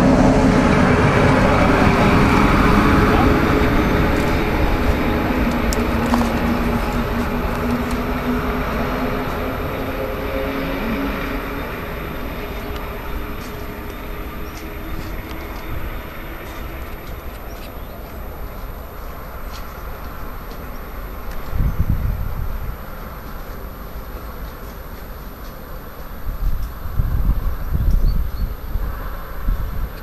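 Class 143 electric locomotive and its double-deck coaches passing close and pulling away, with a steady electric hum from the locomotive's traction equipment over the rolling noise, fading gradually as the train recedes. A couple of low rumbling bursts come later on.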